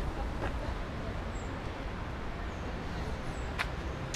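Steady outdoor street background noise with a low rumble, a few faint short high chirps, and a single sharp click about three and a half seconds in.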